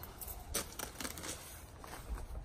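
Faint handling noise: a few light clicks and jingles from keys on a lanyard carried in the hand, with soft rustling of clothing.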